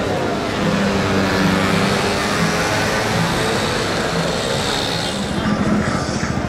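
City street traffic: a steady drone of vehicles.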